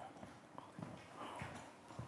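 Faint, irregular light footsteps and small knocks on a wooden floor in a quiet room.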